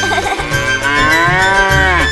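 A cow's single long moo that starts about half a second in and rises, then falls in pitch, over a children's song backing with a steady bass line.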